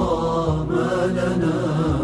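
A nasheed, an Islamic devotional chant in Arabic, sung as background music.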